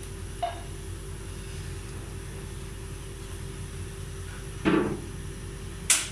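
Hands pressing and patting a soft mashed-potato tikki patty into shape, against a steady low hum. A short thud comes about four and a half seconds in, and a sharp click just before the end.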